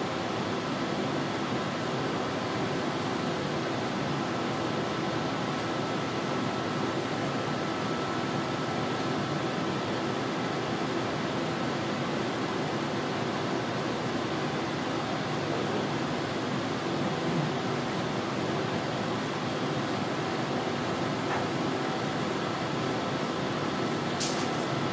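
Steady whirring hiss of a fan or air handling, with a faint steady hum and no change throughout.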